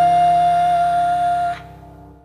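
A female voice holds one long high note over sustained piano chords. The note cuts off about one and a half seconds in, and the piano fades away.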